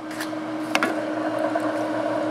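Haake C1 immersion circulator running on a B3 bath: a steady pump-motor hum with the bath water churning, louder once the bath lid is off, and a few light knocks as the lid is handled.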